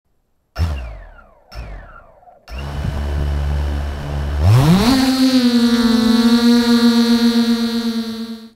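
FPV quadcopter (iFlight XL-8 V4, Brother Hobby Avenger 2806.5 1700kv motors, 8-inch props) sitting on the ground. There are first two short sounds that fall in pitch and fade. The motors then idle as a low hum, and about four and a half seconds in they spool up with a quickly rising pitch as it lifts off, settling into a steady whine in flight.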